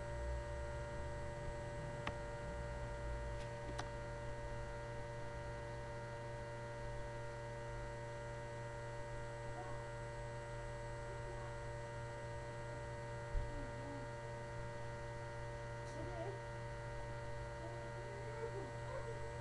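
Steady electrical hum with several faint, steady higher tones over it, and one soft low knock about thirteen seconds in.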